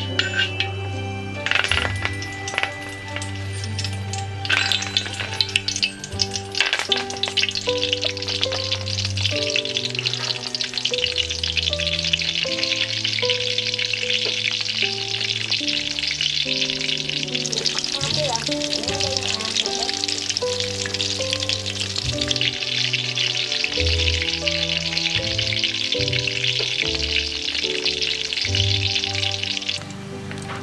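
Hot oil sizzling steadily in a wok as green leaf-wrapped rolls deep-fry, after a few sharp clinks in the first seven seconds while the hiss builds. Soft background music with held notes plays underneath.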